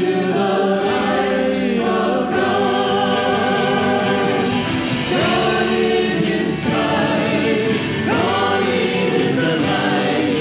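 Church choir and congregation singing a hymn together, holding long notes without a break.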